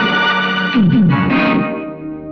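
Film background score led by a distorted, effects-laden electric guitar: sustained notes, two falling slides just under a second in, then a new struck chord ringing out and fading.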